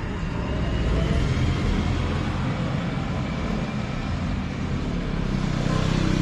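A low, steady motor-vehicle engine rumble, swelling slightly about a second in and again near the end.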